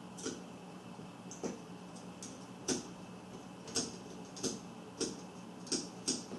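Light, sparse clicks of a hex driver and small screws being worked loose from an RC crawler's chassis as the battery tray is taken off, about one click a second. A faint steady hum sits underneath.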